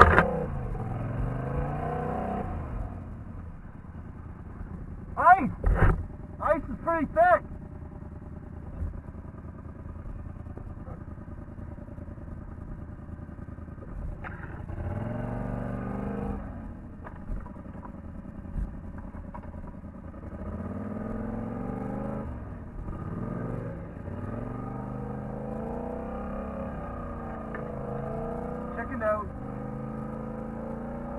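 Polaris ATV engine running under load along a wooded trail, revving up and easing off several times. Brief shouts cut in about five to seven seconds in.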